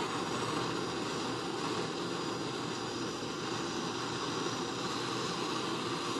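Hand-held propane torch burning with a steady hiss, its flame held on magnesium turnings in a block of dry ice to ignite them.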